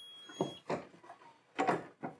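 Hotronix Fusion IQ heat press: a steady high electronic beep that stops about half a second in, marking the end of the pressing time, then a few clunks as the clamp is released and the upper platen is lifted open by its handle.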